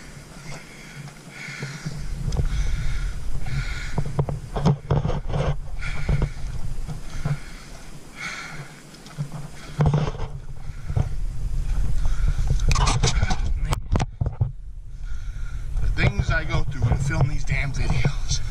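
Footsteps crunching on a gravel dirt road, with wind rumbling steadily on the microphone.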